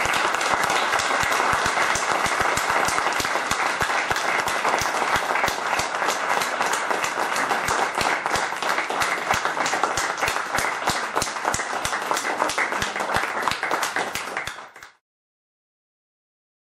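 Audience applause: many hands clapping densely and steadily, cutting off suddenly about a second before the end.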